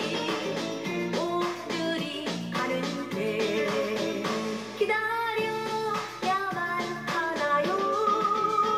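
A woman singing a Korean popular song to a full band backing, heard through a television's speaker with little bass.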